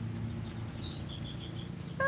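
Small birds chirping, with a quick run of repeated high chirps about a second in, over the steady low drone of lawn mowers running.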